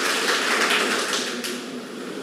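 Audience clapping, a dense patter of many hands that dies away over the second half.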